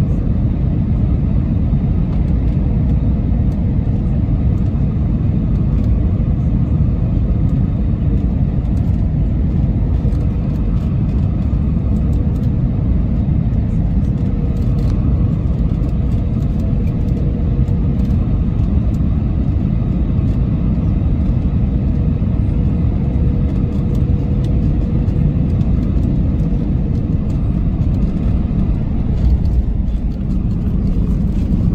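Cabin noise of an Airbus A321 on final approach: a steady loud rumble of jet engines and airflow, with a faint steady tone running through much of it. There is a brief bump near the end as the wheels touch the runway.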